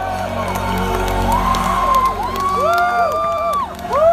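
A progressive rock band plays live over a low sustained drone, heard from within the crowd. Audience members whoop and cheer over it in long held notes that swoop up and fall away, louder in the second half.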